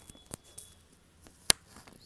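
Microphone handling noise from a borrowed microphone: a single sharp click about one and a half seconds in, with a fainter click earlier, over a quiet room.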